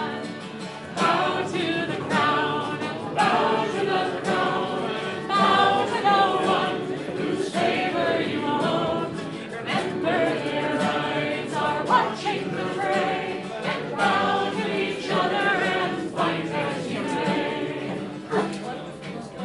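Live folk song: a singer with acoustic guitar strumming.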